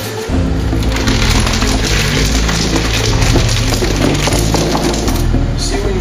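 Ice cubes clattering and rattling as they are poured into a styrofoam cooler, over background music with a steady bass line.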